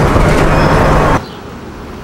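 Loud road and engine noise inside a moving car on a highway, cutting off about a second in to a much quieter background hiss.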